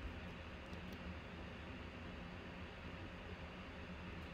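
Steady low hiss and hum of room noise, with a few faint clicks in the first second.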